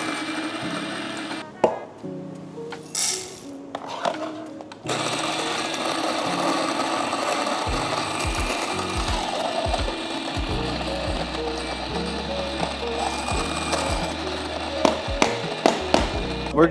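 Fellow Opus electric conical burr grinder grinding coffee beans at a coarse setting. It runs steadily from about five seconds in, after a few short noises, over background music.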